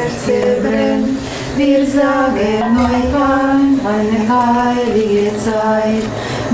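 Women singing a German Christmas song about the candles on the Christmas wreath, unaccompanied, in slow held notes.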